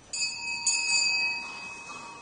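Small church bell, likely the sacristy bell, struck twice about half a second apart, its high ringing fading over a second or so: the signal that Mass is beginning.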